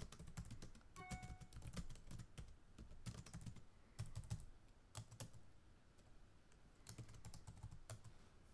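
Computer keyboard being typed on: faint, irregular bursts of keystrokes with short pauses between them.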